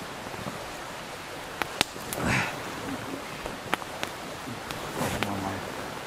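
Wood campfire crackling, with irregular sharp pops over a steady hiss. A short low voice sound comes about five seconds in.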